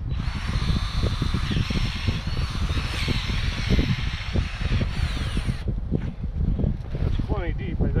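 A cordless drill with a long auger-style bit runs steadily, boring a hole into the ground. After about five and a half seconds it cuts off abruptly.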